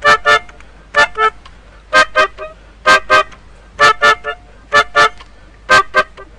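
Melodica playing short staccato chords, mostly in quick pairs about once a second.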